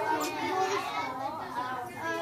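Third-grade children all talking at once in small groups, many overlapping young voices in a steady chatter.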